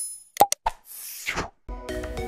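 Cartoon-style pop and click sound effects from a subscribe-and-like button animation: several quick pops with a falling pitch and a mouse click, then a short whoosh. Background music comes in near the end.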